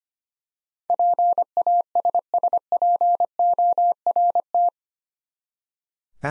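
Morse code sent at 25 words per minute as a single beeping tone keyed in dots and dashes, spelling out the eight-letter word PASSPORT. It starts about a second in and ends on a single dash, the T, about a second before the end.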